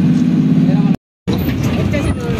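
A vehicle's engine running with a steady low drone, cut off suddenly about a second in; after a short silent break, noise from riding on the open back of the moving vehicle, with voices.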